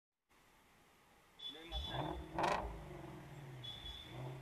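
Scooter ride through city traffic: engine and road noise that starts about a second and a half in, with a short loud burst about halfway through.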